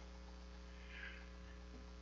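Faint, steady electrical mains hum in a pause with no speech.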